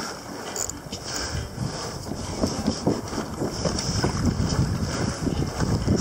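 Wind on the microphone and water moving against a kayak hull: an uneven rushing noise with irregular low thumps.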